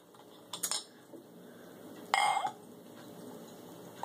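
A glass soda bottle and a drinking glass handled on a wooden table: light clicks about half a second in, then a louder glassy clink about two seconds in, followed by soda faintly pouring into the glass.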